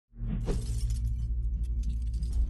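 Synthesized logo-intro sound effect: a deep, steady low drone fading in, with a quick rising sweep about half a second in and a dense high crackle over it.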